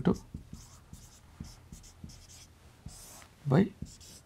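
Marker pen writing on a whiteboard: a run of short scratchy strokes, with a longer stroke about three seconds in.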